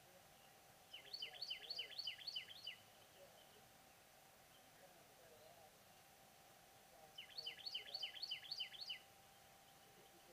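A small songbird calling: two quick runs of about seven sharp, down-slurred chirps, about four a second, the first about a second in and the second near the end.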